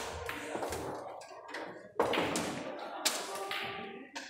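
A pool shot on a billiard table: the cue tip strikes the cue ball about two seconds in, and a second sharp clack of balls colliding follows about a second later. Fainter clicks of balls from nearby tables and a murmur of voices sit underneath.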